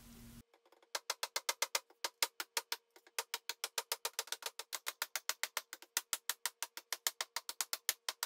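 Bronze hatchet chopping into a pine board: a long, even run of sharp chops, about seven a second, starting about a second in.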